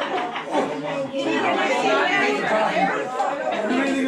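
Several people talking over one another: overlapping conversation and chatter in a room full of guests.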